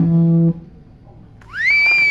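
A rock band's last chord rings out and is cut off about half a second in. After a short lull, a high whistle glides upward near the end and holds steady.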